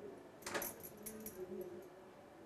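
Bangles on the wrist jingling, with a steel spoon clinking against a steel bowl as soft ghee is scooped out: a quick cluster of light metallic chinks starting about half a second in and fading within about a second.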